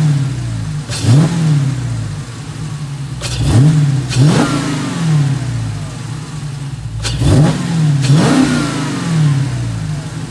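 Dodge Challenger Scat Pack's 6.4-litre (392) HEMI V8, fitted with a Hellcat airbox and intake, free-revving in quick throttle blips, each climbing sharply and settling back to idle, in pairs a few seconds apart.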